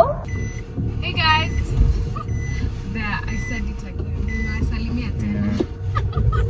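Car running on the road, heard from inside the cabin as a steady low rumble, with short high beeps repeating about every half second and a brief voice or snatch of singing about a second in.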